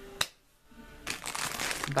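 A sharp click, then from about a second in a clear plastic bag of wax melts crinkling as it is handled.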